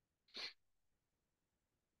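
Near silence, broken once, about half a second in, by a man's single short breath at the microphone.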